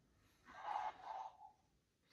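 A man breathing out hard through nose and mouth, one breath about a second long starting about half a second in, with the effort of a slow, deep horse squat.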